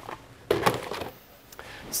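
Handling noise: a sharp knock with a short rustle about half a second in, then a fainter click, as objects are picked up or set down.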